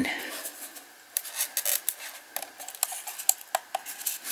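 Small, sharp, irregular clicks and light rubbing as fingers work the switch and plastic base of a motorised display turntable to set it turning. The clicks come thick through the middle of the clip.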